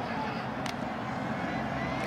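Steady background noise of a football stadium crowd, with a brief sharp click about two-thirds of a second in.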